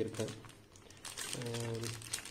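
Crinkling of a clear plastic packet holding a rubber-free clear stamp as it is handled and turned over, loudest in the second half, with a drawn-out voiced "mmm"-like hum at the start and again near the end.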